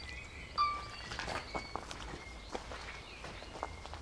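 Footsteps of a person walking slowly over grass and bare ground, a few soft irregular steps. Short high chirps of birds sound over them, the clearest one about half a second in.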